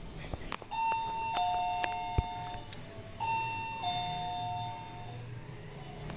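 Two-tone electronic door chime sounding a ding-dong twice, each time a higher note followed by a lower one that rings on briefly, the two chimes about two and a half seconds apart. A single sharp click falls between them.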